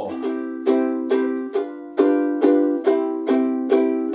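Ukulele strummed steadily, one chord repeated at about two strums a second, in three-four waltz time.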